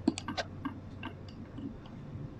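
A quick run of small clicks and knocks, most of them in the first half second and a few more scattered after: handling noise from hands moving things right beside the microphone.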